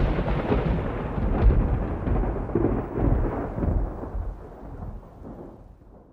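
Thunder rolling over rain: a long, low rumble that swells about a second and a half in and again around three seconds, then fades away near the end.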